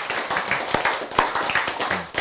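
Audience clapping: many hands applauding together, steadily through the pause.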